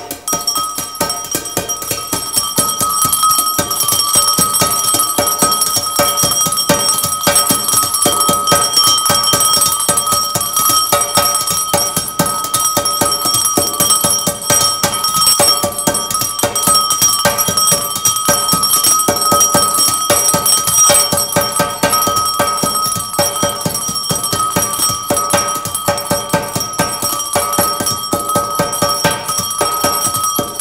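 Bronze cymbals and metal bowls struck in a fast, continuous roll with mallets, building over the first few seconds into a sustained metallic ringing with several steady bell-like overtones.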